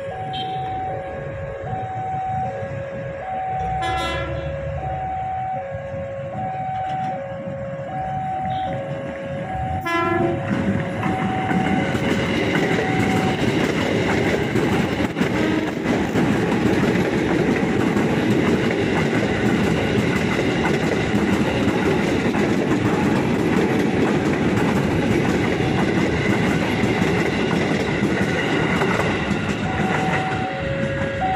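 A level-crossing alarm alternates between two tones, with two short train horn sounds about four and ten seconds in. Then an electric commuter train (KRL multiple unit) passes close by, its wheels clattering on the rails loudly and steadily for the rest of the time.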